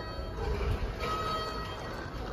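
Schindler 5500 elevator's arrival chime: an electronic ding about a second in, ringing for about half a second over a low steady rumble.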